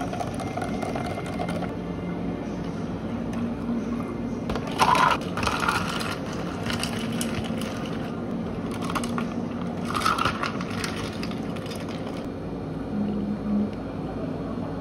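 Ice cubes scooped and tipped into clear plastic cups, clattering and cracking against the cup walls in two bursts, one about five seconds in and one about ten seconds in. A steady low hum sits underneath.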